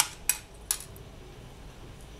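Three quick small metal clicks in the first second from steel jewellery pliers and small metal findings (jump ring, toggle clasp) knocking together while being handled.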